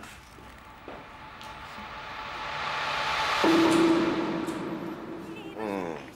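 A musical scene-transition swell: a wash of sound builds steadily to a peak a little past halfway. A held low note comes in at the peak and then fades.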